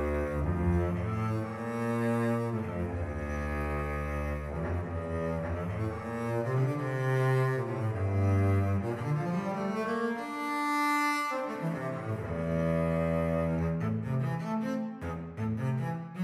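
Sampled solo cello from the CineStrings SOLO library, played from a keyboard: a connected melodic line of bowed notes in the low-mid register, with a slide up in pitch around nine seconds in and shorter, quicker notes near the end.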